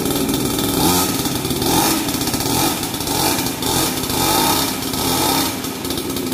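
Small 50cc two-stroke mini trail bike engine, a pull-start grass-cutter-type engine, running steadily just after being pull-started, its note swelling and easing slightly.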